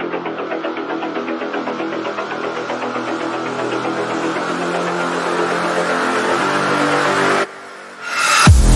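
Dubstep build-up: a fast-pulsing synth chord whose filter slowly opens, growing brighter and louder, then cutting out abruptly near the end in the pause before the drop.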